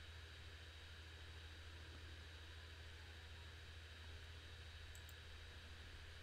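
Near silence: room tone with a steady low hum, and two faint short clicks about five seconds in.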